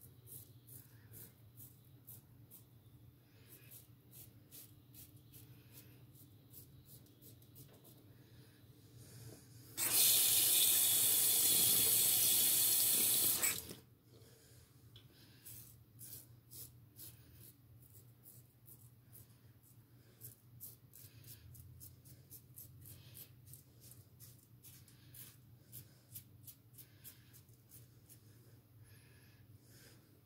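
Eclipse Red Ring safety razor scraping through lathered stubble in runs of short, quick strokes. About ten seconds in, a bathroom tap runs for roughly four seconds, much louder than the shaving, then the scraping strokes resume.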